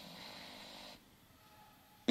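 Near silence: a pause in speech, with a faint echoing tail that dies away about a second in, leaving quiet room tone.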